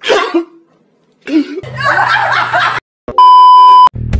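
A man crying out in sobs in two stretches, followed near the end by a loud, steady electronic bleep lasting just under a second, the loudest sound here.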